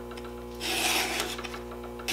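A Stihl 2 in 1 Easy File (3/8) is rasping across a chainsaw chain's cutter, one forward file stroke lasting under a second, about halfway through.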